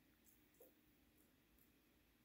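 Near silence: room tone, with a few very faint ticks.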